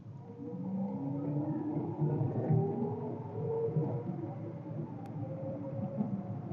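Engine of a 1987 VW Fox 1.6 automatic, a four-cylinder, heard from inside the cabin while the car drives on. It gets louder in the first second, and its note climbs in several slow rises in pitch.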